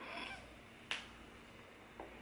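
A single finger snap about a second in, short and sharp against a quiet room.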